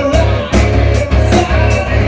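Rock band playing live: electric guitar over a steady drum beat, with a man singing into a microphone.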